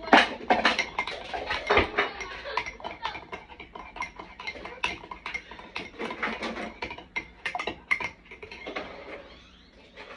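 A spoon stirring in a ceramic mug, clinking and scraping against its sides in quick, repeated strokes. The strokes thin out near the end.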